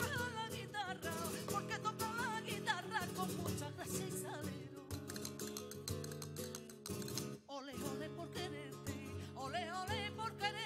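Flamenco guitar playing sevillanas with repeated strummed chords. A woman's flamenco voice sings a wavering, ornamented line over it for the first few seconds, drops out, and comes back in near the end. The guitar briefly drops away a little past the middle.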